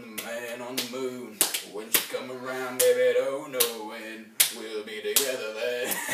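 A man singing a wordless intro tune, with sharp slaps keeping a steady beat about three times every two seconds.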